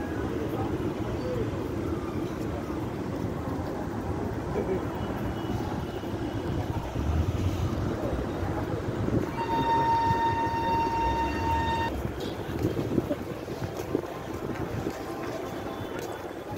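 Steady street traffic rumble, with one vehicle horn held for about two and a half seconds about nine seconds in.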